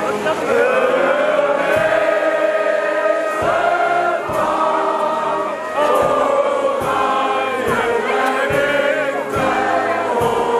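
A large crowd singing along in chorus with a brass marching band, over a steady bass drum beat a little faster than once a second.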